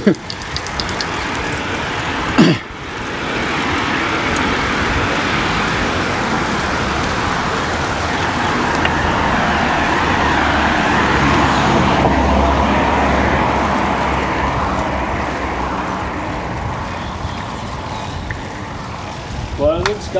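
Steady road and traffic noise on a wet street, swelling as a car comes down the hill and passes a little past halfway, with its low engine rumble at its loudest then and fading toward the end. A single brief sharp sound is heard about two seconds in.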